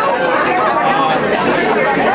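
Several people talking at once: overlapping, indistinct conversation with no one voice standing out.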